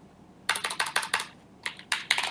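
Computer keyboard typing: a quick run of keystrokes starting about half a second in, then a few more keystrokes near the end.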